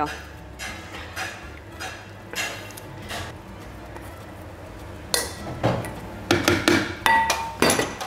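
Metal spatula and stainless-steel bowls knocking and clinking on a steel bench. Soft scraping and taps come first, then a run of sharper knocks in the last three seconds, with one short ringing clink.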